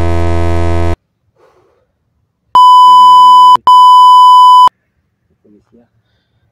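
A loud, low, buzzing sound effect for about a second, then two loud steady high-pitched censor bleeps of about a second each, back to back, covering speech.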